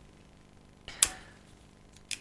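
A man's short, sharp intake of breath close to a lapel microphone about halfway through, with otherwise a quiet room-tone background.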